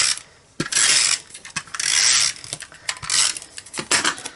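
Stampin' Up! SNAIL adhesive tape runner rolled in short strokes across the back of a cardstock strip, about three scratchy runs of tape with light clicks of the dispenser between them.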